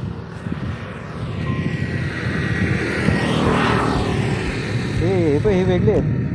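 A motor vehicle passing on the road: a rushing noise that swells to its loudest about halfway through and then drops away. A voice comes in near the end.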